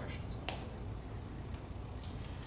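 A single sharp click about half a second in, over a low steady room hum.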